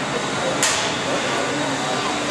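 Combat-robot arena noise: a steady din with one sharp hit about half a second in that rings off briefly, as beetleweight robots clash or one strikes the arena wall.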